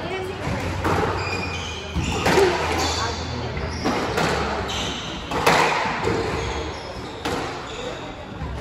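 Squash ball cracking off rackets and the court walls during a rally, a sharp hit every second or two, each echoing in the enclosed court.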